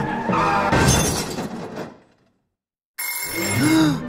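Cartoon soundtrack: music with a loud crash-like burst about a second in, which fades away into a second of silence. Then a sudden bright ringing starts, an alarm clock going off, with a short rising-and-falling pitched sound over it near the end.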